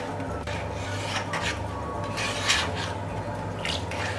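Steel spatula scraping and stirring thick green-pea dal in a stainless steel kadai, about four scraping strokes roughly a second apart.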